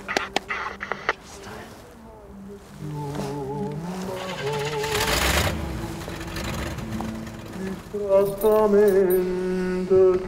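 Film soundtrack: a few sharp clicks in the first second, then music of held, wavering notes. About five seconds in a car passes, a rush of noise that rises and falls. The music swells louder near the end.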